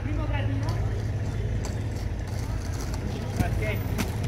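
Steady low background rumble, with people's voices at the start and again near the end, and a single short click about three and a half seconds in.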